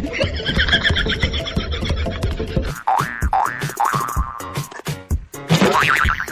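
Background music with added cartoon-style comedy sound effects: a wavering, whinny-like call in the first two seconds, then a few short rising boing-like chirps about three to four seconds in, and another sweep near the end.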